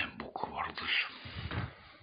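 Quiet whispered speech by a person, in short broken phrases.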